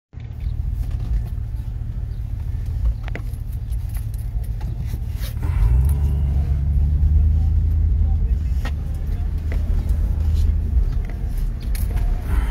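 Engine and road rumble heard from inside a moving vehicle's cabin. About five seconds in, it grows louder and rises a little in pitch as the vehicle speeds up, with a few faint clicks over it.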